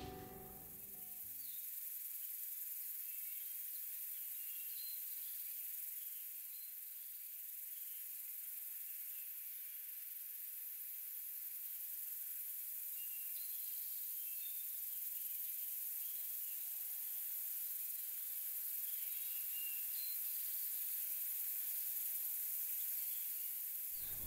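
Outdoor pond-side ambience: a steady high hiss with faint short bird chirps now and then. Guitar music fades out at the very start.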